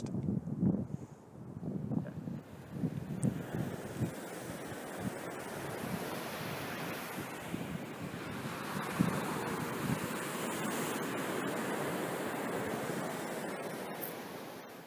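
Ocean surf washing onto a rocky shore, a steady rush of noise that settles in a few seconds in, with wind buffeting the microphone at first.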